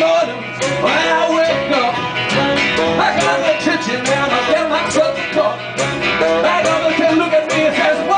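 Live band playing an up-tempo passage: a wavering lead melody over plucked guitar and a steady percussive beat.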